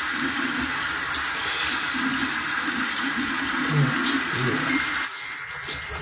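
A shower running, a steady hiss of falling water that drops noticeably in level about five seconds in.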